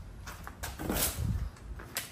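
A few soft, irregular footsteps and shuffling on a concrete garage floor, with a small click near the end.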